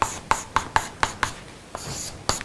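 Chalk writing on a chalkboard: a quick run of short sharp taps and strokes, about four or five a second, then a longer scraping stroke near the end.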